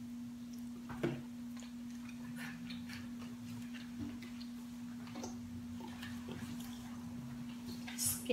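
Quiet eating sounds: scattered small clicks and crunches of people chewing and picking at fried chicken, with a sharper click about a second in. A steady low hum runs underneath.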